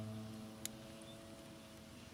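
An acoustic guitar chord ringing out and slowly fading, with one faint click about two-thirds of a second in.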